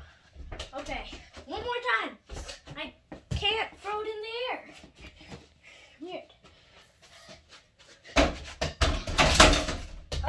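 A child's wordless vocal sounds with knocks and thuds of a small ball on a door-mounted mini basketball hoop and the door, ending in a louder run of knocks and noise.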